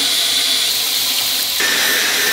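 Water running steadily from a tap or shower, a loud even rush, with a thin steady whistle-like tone joining about one and a half seconds in.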